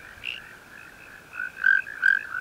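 Frogs calling: a run of short, high chirps repeating several times a second, growing louder in the second half.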